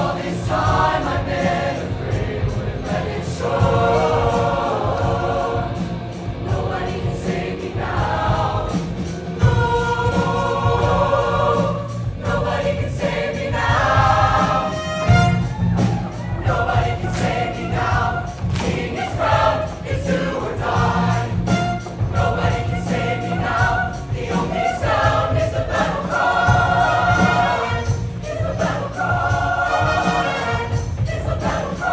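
Show choir of mixed voices singing in harmony over an instrumental accompaniment with a steady bass and beat.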